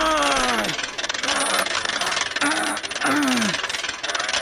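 Hand crank being turned, a loud fast mechanical rattle. Over it come three short voice-like groans that fall in pitch: one at the start, two more about two and a half and three seconds in.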